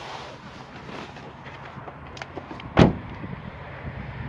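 A car door shutting with one loud slam about three-quarters of the way through, after a few small clicks and handling noises.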